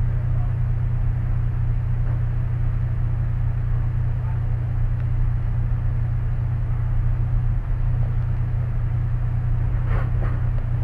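Steady low rumble of an idling vehicle engine, even throughout.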